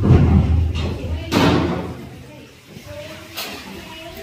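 Indistinct talking, with a heavy thump at the very start and a second sharp knock about a second and a half in.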